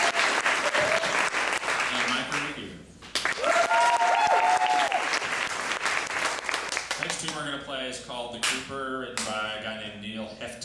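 Audience applauding in two bursts, the first dying away about three seconds in and the second starting right after, each with a voice calling out over it. The clapping thins out in the last few seconds as a voice takes over.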